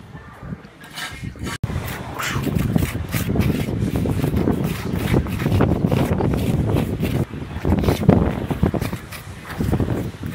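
Strong wind buffeting the microphone, a loud irregular low rumble of gusts that grows heavier after a brief dropout about a second and a half in.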